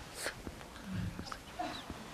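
Soft breath and a brief low murmur, with a few faint clicks such as lip or hand noises, over quiet room tone.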